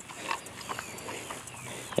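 Faint outdoor background with scattered short animal sounds and light ticks.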